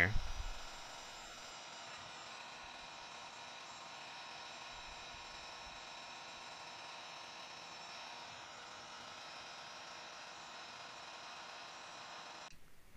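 Handheld Wagner heat gun running steadily, a constant fan hiss with a faint hum, blowing hot air into a shower mixing valve to soften a stuck plastic cartridge.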